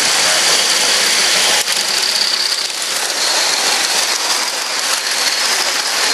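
Live steam locomotive and its freight cars running past close by, a steady rushing clatter of steam exhaust and wheels rolling on the rails.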